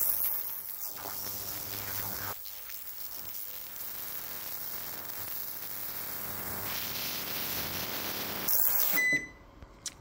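Vevor digital ultrasonic cleaner running with a steady hiss from its tank of solutions. Near the end a short beep sounds from its control panel and the hiss cuts off.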